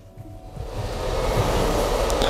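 A steady rushing noise that swells over about the first second and then holds level.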